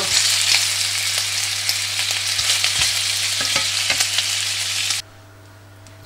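Bacon rashers sizzling in hot oil in a nonstick frying pan, with a few short knocks as a wooden spatula moves them. The sizzling cuts off suddenly about five seconds in.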